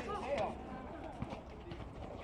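Outdoor basketball court: faint, distant voices of players with scattered footsteps and a few light knocks on the concrete.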